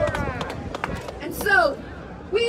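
Shouting voices from a rally crowd, with one loud call falling in pitch about one and a half seconds in.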